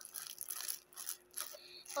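Plastic tissue packet crinkling and rustling right against a microphone, in several short bursts.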